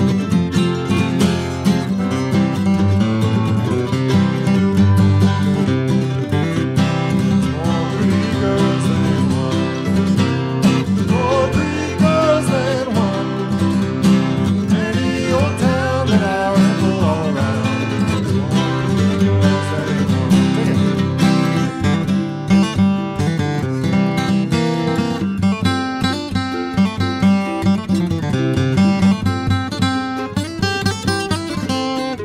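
Acoustic guitar and mandolin playing a brisk bluegrass-style tune together, at about 130 beats a minute.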